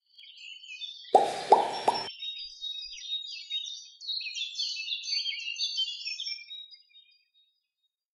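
Intro sound effect: small birds chirping in quick, high twitters, with three loud plops in quick succession about a second in. The chirping fades out about a second before the end.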